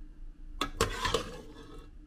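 Kitchen clatter at a ceramic bowl: a dense burst of clinks and rattles lasting about a second, starting about half a second in.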